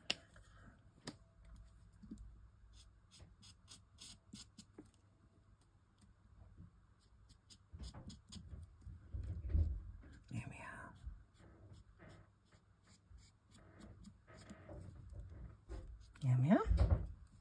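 Faint sounds of colouring with a Nuvo alcohol marker on a small die-cut card figure: a quick run of light clicks and taps in the first few seconds, then sparser soft ticks.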